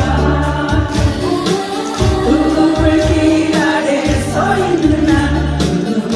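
A woman singing a Korean song live into a microphone over a band accompaniment with a steady, pulsing bass beat.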